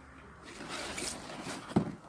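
A cardboard appliance box being turned by hand, its surface scraping and rustling for about a second, with one sharp knock just before the end.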